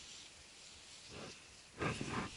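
Skier's breathing close to the helmet camera: a short rough breath about a second in and a louder grunting exhale near the end. Under it, a faint steady hiss of skis sliding on snow.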